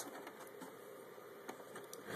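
Quiet room tone with a single light click about one and a half seconds in.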